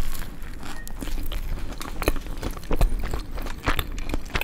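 Close-miked eating sounds of a hamburger being bitten and chewed: a dense run of short, sharp, wet clicks and soft crunches.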